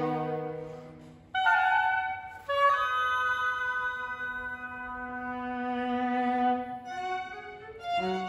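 Live chamber ensemble of two violins, viola, flute, oboe, cello and double bass playing slow, sustained chords. A held chord fades away, then new chords come in sharply a little over a second in and again about a second later, held for several seconds before thinning out near the end.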